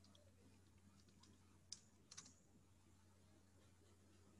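Near silence with a faint steady low hum and a few small clicks: one a little under two seconds in, then a quick pair just after.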